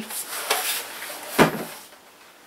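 Plastic laptop case, an old Toshiba Satellite, being handled and turned over in the hands, with light rubbing and clattering. One sharp knock comes about one and a half seconds in.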